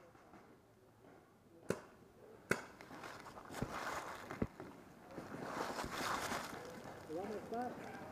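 Sharp pops of paintball markers firing, the two loudest about a second apart, followed by a few fainter knocks. Then comes a stretch of rustling in dry fallen leaves, with faint voices near the end.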